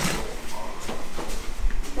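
Soft rustling and shuffling with a few faint knocks as a man climbs out of a car's driver's seat; the engine is not running.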